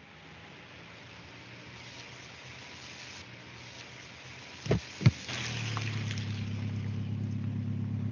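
A steady faint hiss of open air, then a car door opened and shut: two sharp clunks about half a second apart just under five seconds in. After them comes a steady low hum of the car's idling engine.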